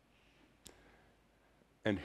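Near silence, broken by one short, sharp click about two-thirds of a second in; a man's voice starts just before the end.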